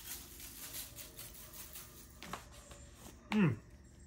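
Salt being shaken from a shaker onto meat in a foil pan: faint soft ticks and rattles over a quiet background, with a short hummed "hmm" near the end.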